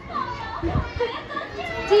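Two small children laughing and chattering in high, excited voices.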